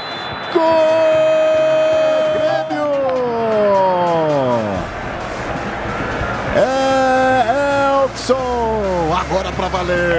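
Brazilian TV football commentator's drawn-out goal cry: long held, high-pitched notes that slide down in pitch as each breath runs out.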